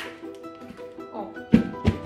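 Background music with plucked strings. About one and a half seconds in come two loud thumps, a third of a second apart, as the folded rubber sides of a collapsible bucket are pushed out and pop open.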